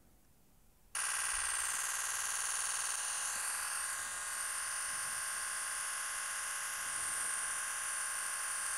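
Nikon Z9 firing a continuous 20-frames-per-second burst, its shutter sound repeating so fast that it runs together into a steady buzz. It starts about a second in.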